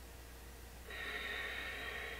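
One long, steady audible breath, starting about a second in and lasting about a second and a half: a deliberate, counted breath held during a seated yoga twist.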